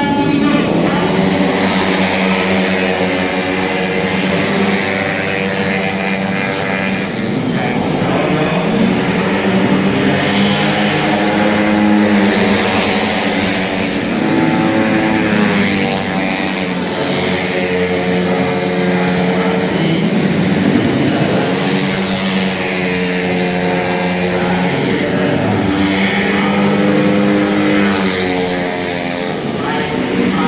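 A pack of 150cc automatic racing scooters running hard around the circuit, their engine notes rising and falling in pitch again and again as they brake and accelerate through the corners.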